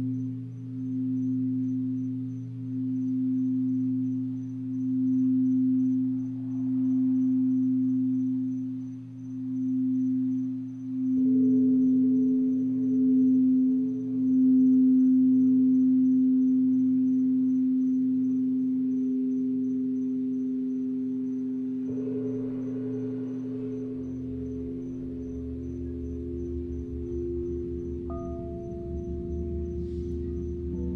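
Crystal singing bowls played with a mallet, ringing one strong sustained tone that swells and fades about every second and a half. More bowl tones join in about 11 and 22 seconds in, and a low gong rumble comes in underneath near the end.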